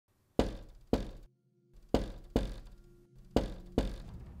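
Knuckles knocking on a door: three double knocks, about a second and a half apart, each knock ringing out briefly.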